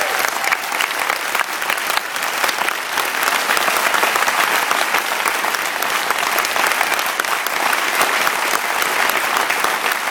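Large audience applauding: dense, steady clapping with no pause.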